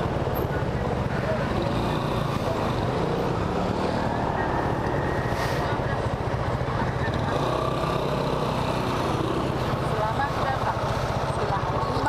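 Yamaha Aerox scooter's single-cylinder engine idling steadily while it waits and creeps forward at a gate.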